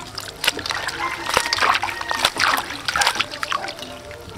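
Water splashing and sloshing in a bowl as a bunch of enoki mushrooms is swished and lifted by hand, with irregular splashes and dripping.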